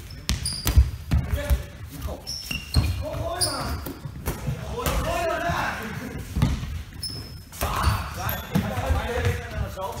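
Foam balls bouncing and thudding on a sports-hall floor as they are thrown and caught, a sharp knock now and then, the loudest about a second in, with brief high squeaks of sneakers and pupils' shouts, all echoing in a large gym.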